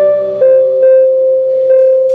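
A live band's instrumental passage: one long held note with a few shorter notes struck over it.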